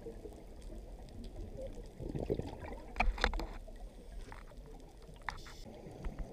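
Underwater sound picked up by a diving camera: a scuba diver's exhaled bubbles gurgling in a loud cluster about two to three and a half seconds in, over a low rumble, with a few scattered sharp clicks afterwards.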